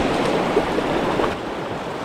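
River current rushing over rocks in a shallow riffle: a steady rushing noise that drops a little in level about two-thirds of the way through.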